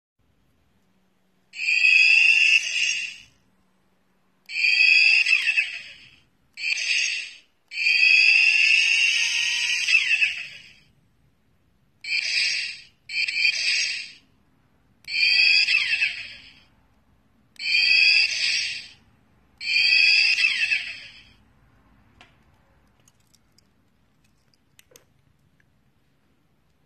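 Miniature turbocharger keychain playing recorded turbo spool-up whistles through its tiny speaker: nine separate bursts of one to three seconds each, each a rising whine.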